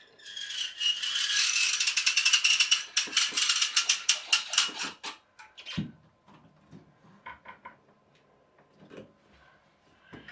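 Spring-loaded metal tension pole of a bathroom caddy being pushed up and worked into place: a loud, rapid, ratchet-like grating of metal for about five seconds. Then comes a single knock and a few light clicks as it settles.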